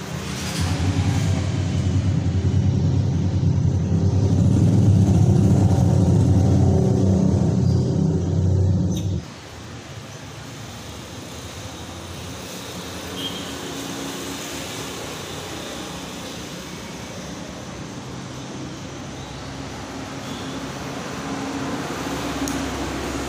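A loud, low-pitched engine running steadily stops abruptly about nine seconds in. A much quieter steady hum continues afterwards.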